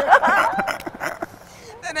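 Voice in the interview: laughing and laughing speech in the first second or so, fading to a short lull before talking starts again.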